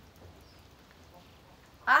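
Near quiet: faint, even background noise with no distinct event, until a woman starts speaking right at the end.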